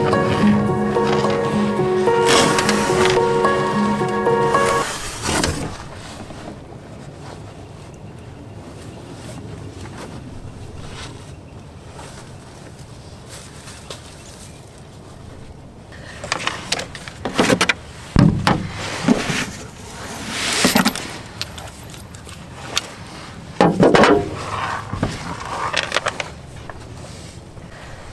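Soft guitar background music fades out about five seconds in, leaving a quiet outdoor background. From about the middle on come a series of irregular knocks and clunks as a tire and wheel are handled and fitted back onto the Krause field finisher.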